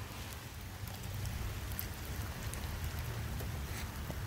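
Light rain falling: a steady hiss with a few faint drop ticks over a low rumble.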